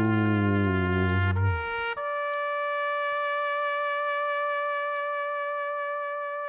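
Comedic brass 'fail' sound effect, the stock signal of a letdown. A descending wah-wah phrase slides down over the first second and a half, then a long steady high note is held from about two seconds in.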